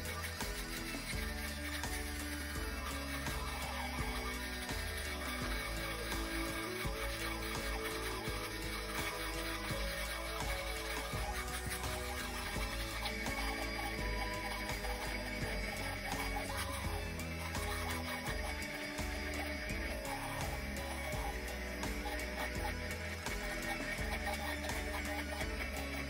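Background music with changing notes, running steadily.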